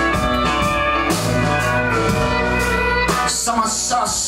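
Live song music led by a strummed acoustic guitar, playing steadily with sustained notes underneath and no singing.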